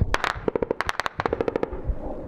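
Rapid bursts of incoming small-arms fire, shots about ten a second: a short string at the start, then a longer one from about half a second in until near the end. This is fire accurate at some 700 metres, judged sharpshooter standard.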